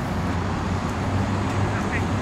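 Steady city street traffic noise, a low rumble.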